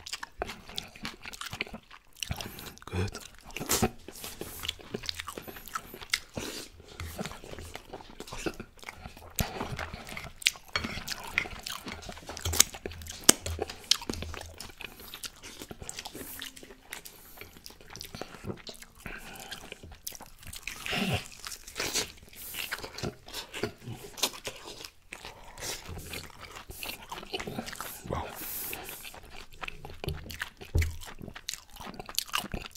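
Close-miked open-mouth chewing and lip smacking on baked chicken and couscous, a steady run of irregular short wet clicks and bites.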